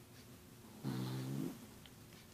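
A man's short, steady, low-pitched hummed 'hmm' about a second in, lasting under a second.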